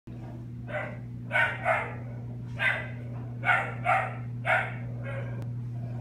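A dog barking in a series of about seven short barks, spaced unevenly, with a fainter one near the end, over a steady low hum.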